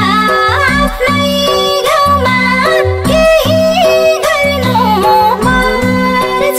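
Nepali lok dohori folk song: a sung vocal line with ornamented, bending notes over folk instruments and a steady beat.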